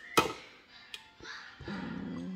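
A single sharp knock just after the start, then cream being poured into a plastic blender jar. Background music with a held note comes in near the end.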